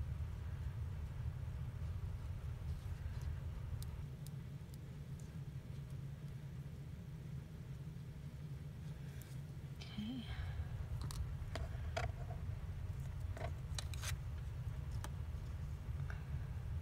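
Sparse, light clicks and taps of small craft tools handled on a work surface, over a steady low hum.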